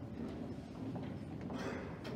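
Footsteps of several people walking across a wooden gym floor, shoe heels clacking unevenly, over a low murmur and rustle from the seated audience, with a short rustling noise near the end.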